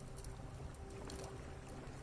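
Quiet, steady ambient background: a low hum-like bed with a faint held tone and scattered light ticks.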